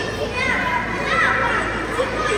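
Children's voices speaking in Tibetan, high-pitched and overlapping, in a large hall.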